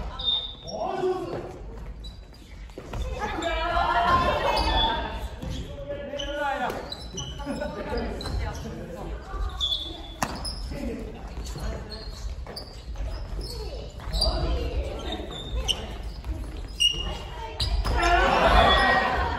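Badminton rally in a large hall: a few sharp racket-on-shuttlecock hits with hall echo, among repeated short squeaks of sneakers on the wooden court.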